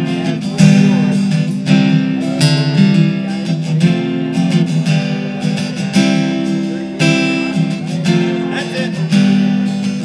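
Acoustic guitar strummed in chords, an instrumental break in a live song with no singing.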